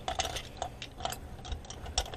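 Wooden Faber-Castell coloured pencils clicking and rattling against one another as loose ones are handled in a pencil case: a run of small, irregular clicks.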